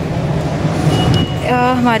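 A car engine idling, a steady low hum under a noisy hiss, with a brief high tone about a second in.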